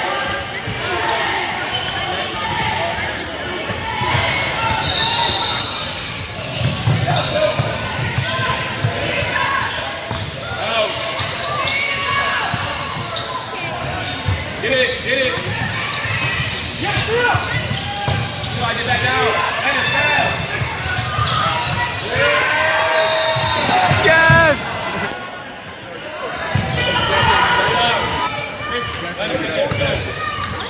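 Basketball game in a large gym: a ball bouncing on the hardwood court under a steady mix of crowd voices and shouting, with an echo from the hall. Two brief high tones sound about five seconds in and again about three-quarters of the way through.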